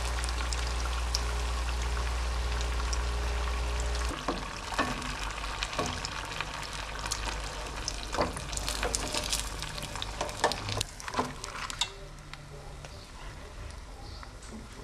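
Pastéis deep-frying in very hot fat in a pan as they brown and crisp, a steady crackling sizzle. From about four seconds in, a few sharp clicks and scrapes of a slotted metal spatula in the pan; the sizzle is quieter near the end.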